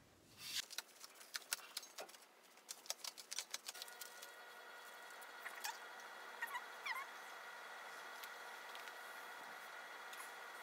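Handling noise of a bicycle rim and a tubular tyre: a quick run of clicks and knocks in the first few seconds, then a few short squeaks over a faint steady high tone.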